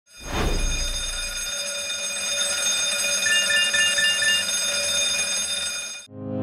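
Alarm-like sound effect: a steady ringing tone that rises in over the first half second, with a low rumble under it for the first second and a half. A run of five quick beeps comes in at about three and a half seconds.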